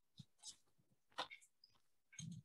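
Near silence with a few faint short clicks and small noises.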